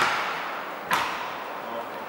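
Two sharp knocks about a second apart, each fading briefly, as the Audi Q7's plastic rear spoiler is pressed down by hand onto the tailgate so that its clips snap into place.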